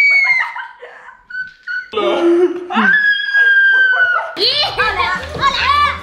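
Children laughing and shrieking in long, high-pitched squeals, with a brief lull about a second in. About four and a half seconds in, background music with a steady beat starts.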